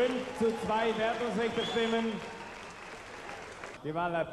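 Audience applauding in a large hall, with a man's voice over the loudspeakers during the first couple of seconds. The applause dies away toward the end.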